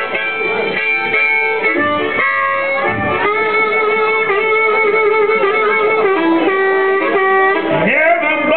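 Blues harmonica cupped against a microphone and amplified, playing a solo of long held notes with a few bends.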